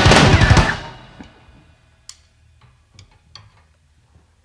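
A rock band ending a song: a quick run of final hits on the drum kit with the electric guitars and bass in the first second, then cymbals and amplifiers ringing out and dying away. A few faint clicks and taps follow.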